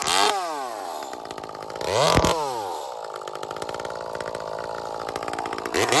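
Ported Echo 2511T top-handle two-stroke chainsaw running with a 1/4-pitch bar and chain: its revs fall back to idle, it is blipped briefly about two seconds in, idles steadily, and is revved up again near the end.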